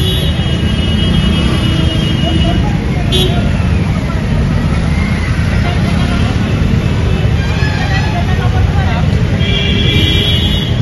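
Loud, steady roadside noise: a low traffic rumble with people's voices over it.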